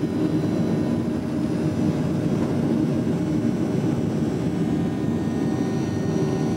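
Boeing 737-700 turbofan engines at takeoff power during the takeoff roll, heard from inside the cabin: a steady, loud, deep rush with a faint steady hum on top.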